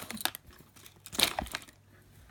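Rustling and scuffing of things being packed back into a fabric zip pencil case, in short handling bursts at the start and again just past a second in.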